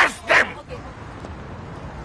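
A man yelling out in pain: two short, loud yelps in the first half-second, then only a faint hiss.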